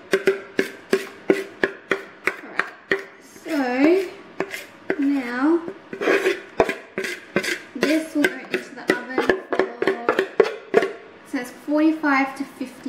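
Spoon scraping cake batter out of a mixing bowl in quick, regular strokes, about three a second, with a voice humming a tune over it.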